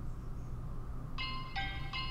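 A low steady hum, then about a second in, music starts with a run of bell-like chime notes, about three a second.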